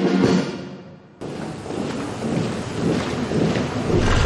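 Military brass band music dying away over the first second. About a second in, it cuts abruptly to an even background noise with no clear tune.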